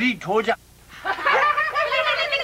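A short spoken phrase, then from about a second in a woman's high voice laughing and talking.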